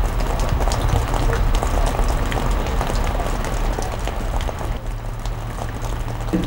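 Steady rain falling, a continuous hiss dotted with many small drop ticks over a low rumble.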